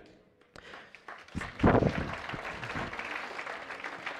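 A congregation applauding, with voices saying "amen" about a second and a half in.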